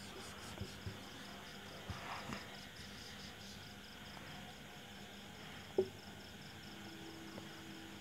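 Quiet room with soft strokes of a marker on a whiteboard, under a faint, evenly pulsing high chirping of an insect that fades after the first few seconds; a single short click near six seconds in.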